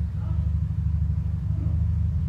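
A steady low rumble with no speech over it, the same rumble that runs under the talking on either side.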